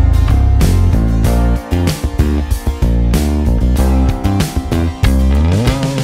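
Kiesel A2 multi-scale electric bass played fingerstyle in a busy riff of changing low notes over a backing track. Near the end a note slides upward in pitch.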